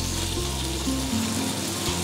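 Chicken and garlic sizzling in oil in a hot wok over a gas flame, a steady frying hiss.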